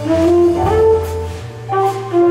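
Flugelhorn playing a jazz melody of held notes, one note moving up to the next, over a low bass line and light cymbal strokes from the band.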